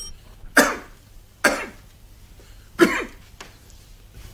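A man coughing and clearing his throat in three short bursts, the last the loudest.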